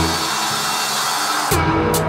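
Instrumental passage of a dubstep track: a deep sub-bass note fades under a hiss, then about a second and a half in, sharp percussion hits and a steady bass line come in.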